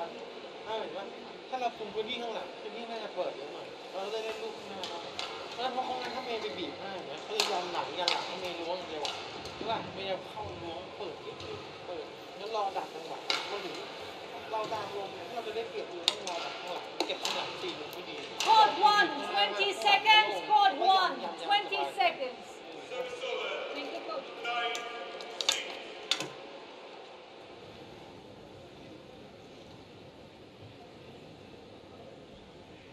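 Speech: a coach talking close up to a badminton player, with a few sharp clicks. The voices grow louder and higher about two-thirds of the way through, then the talk stops and only a low steady background remains.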